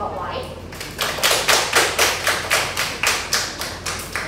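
A small group of people clapping their hands in a quick, even rhythm, about five claps a second, starting about a second in: applause for a speaker who has just finished.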